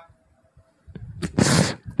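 A man's single short, sharp burst of breath blown onto a headset microphone, about a second and a half in.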